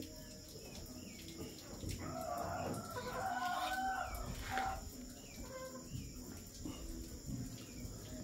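Peafowl calling: a cluster of wavering calls from about two to four and a half seconds in, with faint thin peeps from the peachicks scattered through.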